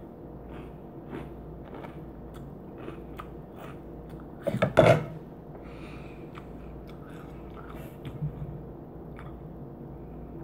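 Mouth chewing and crunching on a spoonful of Hot Cheetos soaked in milk, faint and repeated, with a brief louder sound about halfway through.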